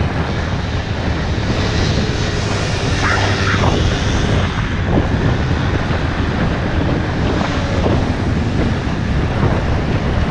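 Aprilia Scarabeo 200ie scooter's single-cylinder engine running steadily at cruising speed, under heavy wind rush on the action-camera microphone.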